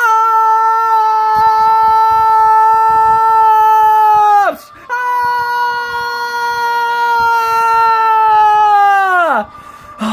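A cartoon character's long scream, held on one high pitch for about four seconds, drooping at the end, then a second equally long scream after a brief breath, which also falls off near the end.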